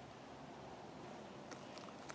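Faint steady outdoor background hiss with no distinct sound, and a light tap about one and a half seconds in.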